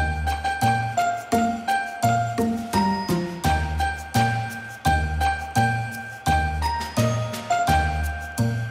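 Background music: a bell-like chiming melody over low bass notes with a steady beat.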